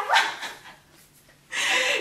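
A woman laughing: a short pitched vocal cry right at the start, then after a quiet second a loud, breathy burst of laughter.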